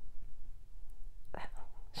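A pause in a woman's speech: low steady room hum, one short breathy exhale about one and a half seconds in, and her voice starting again at the very end.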